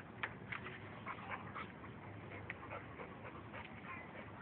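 Faint, irregular short sounds from a Cane Corso as it noses about the yard, over a low steady background.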